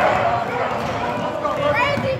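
Spectators' voices and shouts echoing through a gymnasium during a basketball game, with short high squeaks of sneakers on the hardwood court, the clearest near the end.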